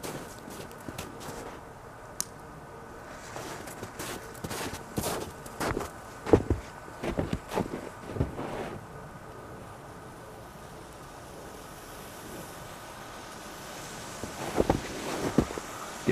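Footsteps crunching in snow, coming as irregular strikes in a few clusters, over a faint steady hiss that grows slightly near the end.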